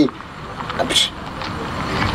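A car passing on the street: a steady rush of engine and tyre noise that slowly swells toward the end, with a brief high hiss about a second in.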